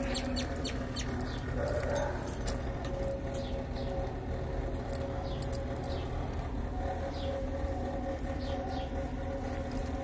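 Outdoor background of birds chirping in short, scattered calls, over a steady hum and a low rumble.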